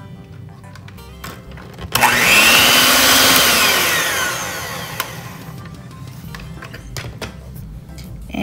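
Electric hand mixer beating eggs, sugar and corn syrup in a mixing bowl: it switches on suddenly about two seconds in, its motor whine falling in pitch, and dies away a few seconds later.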